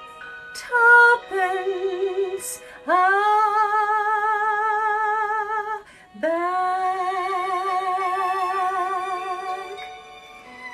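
The closing bars of a slow song: a few short notes, then two long held notes sung with a steady vibrato, the second fading out near the end.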